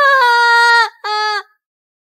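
A young woman wailing in tears, crying out "Ma-aah!" in a long held wail that falls slightly in pitch, then a second shorter wail about a second in.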